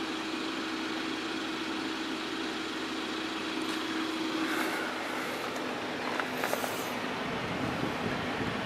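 Steady background noise with a faint hum, and a few faint light clicks and rustles near the end.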